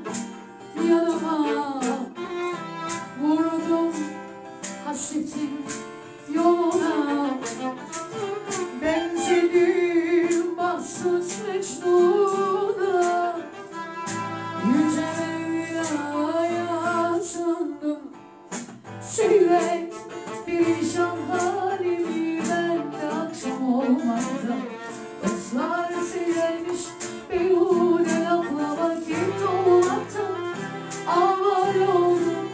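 A woman singing live into a microphone, accompanied by acoustic guitar and violin, with long, bending held notes in the voice.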